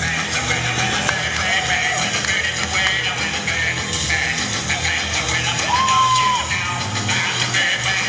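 Loud, upbeat dance music with a steady beat and singing. A short, high held note sounds about six seconds in.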